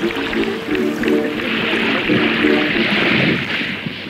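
Documentary film soundtrack played back in a hall: a simple, chant-like sung melody over a steady rushing noise. The melody fades out about three and a half seconds in while the rushing noise carries on.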